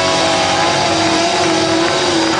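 Live rock band playing loud, heard from within the crowd: held distorted electric guitar notes that bend slightly in pitch, over a dense wash of amplified band sound.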